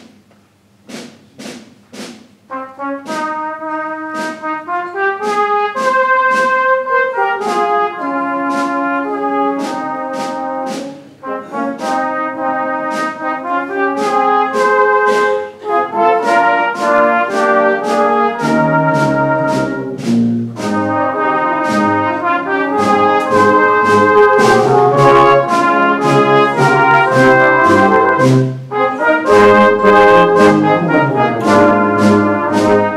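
A brass band plays a medley of First World War songs. A few sharp percussion strokes open it, the brass comes in about two and a half seconds in, and the deeper brass joins past the halfway mark.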